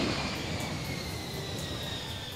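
Jet airplane flyby sound effect: a rushing whoosh with a high whine that slowly falls in pitch as it passes and fades.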